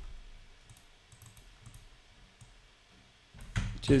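Faint computer mouse clicks, a quick scatter of them between about one and two and a half seconds in, made while switching modules and selecting text in the code editor.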